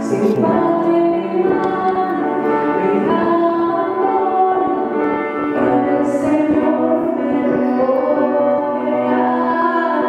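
A woman singing a slow church song to her own grand piano accompaniment, holding long notes.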